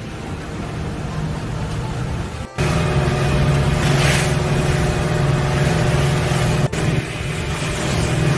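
Boat's outboard motor running steadily under way, with the rush of the wake and spray. It gets suddenly louder about two and a half seconds in.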